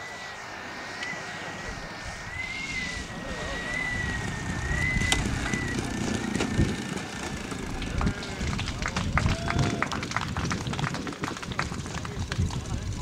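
Moki/Mark M210 35 cc engine of a giant-scale RC P-51 Mustang model running throttled back as it lands and rolls out on grass, with a faint wavering whine. A low rumble builds from about four seconds in, and from about eight seconds in the sound breaks into a rapid crackle of pops.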